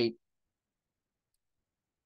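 A man's voice cuts off just after the start, then near silence.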